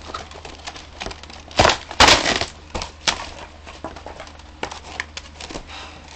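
Handling noise as a plastic toy foam-dart blaster is pulled from its packaging: scattered clicks and rustles of plastic and packaging, with two loud knocks or rustles about one and a half and two seconds in.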